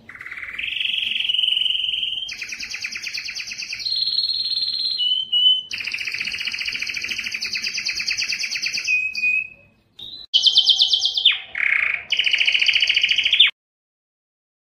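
Male domestic canary singing a long song of rapid trills and rolls, the phrase changing every second or two. The song breaks off briefly about ten seconds in, then resumes and stops abruptly near the end.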